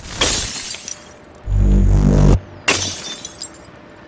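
Electronic logo sting of glitchy, shattering noise hits: a sudden crash at the start, a deep bass hum for about a second in the middle, and another crash about two and a half seconds in, trailing off quieter.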